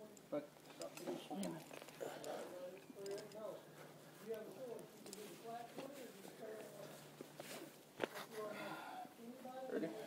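Faint, indistinct voices talking throughout, with a single sharp click about eight seconds in.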